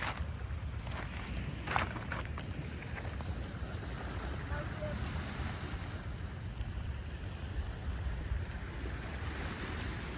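Steady low rumble of wind on the microphone over small waves lapping on a rocky shore, with a couple of sharp clicks in the first two seconds.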